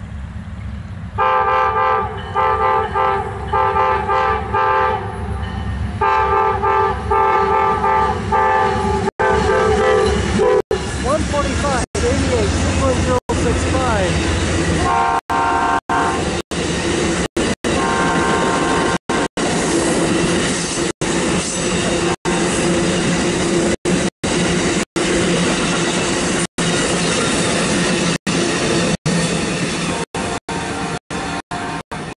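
Amtrak passenger train approaching and passing at speed. The locomotive's multi-chime horn sounds two long blasts and then two shorter ones over the loud diesel. Then the bilevel cars roll by with a steady rumble of wheels on rail, and the sound cuts out briefly many times.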